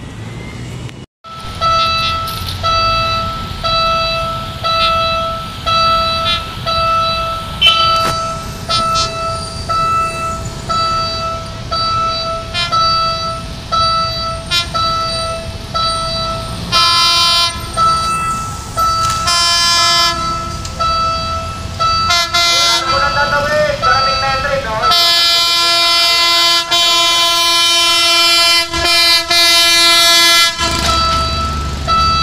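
Level-crossing warning signal chiming in a steady repeating pattern, followed by a train horn sounding three short blasts and then one long blast as the train approaches the crossing. A brief rising whine comes between the third and fourth blasts.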